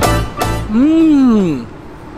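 A man's closed-mouth 'mmm' of enjoyment while chewing a mouthful of food: one hum lasting about a second, its pitch rising and then falling. Background music with a steady bass line cuts off just before it.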